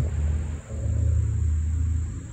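Outdoor ambience: a steady low rumble that dips briefly about half a second in, under a faint, steady, high-pitched insect drone.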